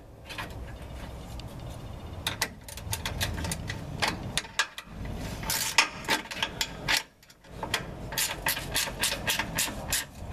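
Ratchet wrench clicking in quick runs as a 13 mm bolt is tightened down, with a short pause about seven seconds in.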